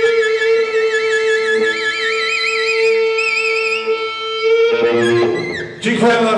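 Live rock band holding a long final note, with a steady low tone under a high tone that wavers up and down. About five seconds in the sound turns louder and noisier, with a falling slide, as the song ends.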